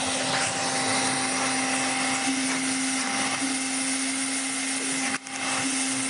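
48-volt barrel-type wet/dry vacuum cleaner running steadily at strong suction, a rush of air over one steady low motor tone. The sound drops briefly about five seconds in.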